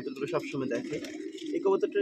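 Domestic pigeons cooing in a loft, a steady low cooing underneath.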